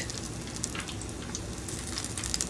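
A flour-and-egg-battered squash blossom frying in about a quarter inch of hot oil in a skillet: a steady light sizzle with scattered small crackles and pops.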